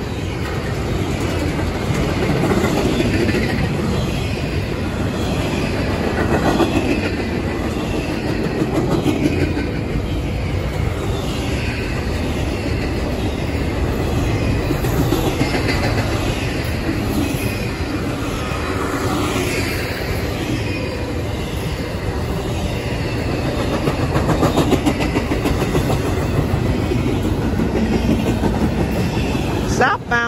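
Double-stack container cars of a CSX intermodal freight train rolling steadily past at close range: a continuous rumble of wheels on the rails. The train is running slower than usual.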